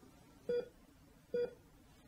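Bedside heart-monitor beeps: two short, identical electronic beeps just under a second apart, part of a steady pulse-like rhythm.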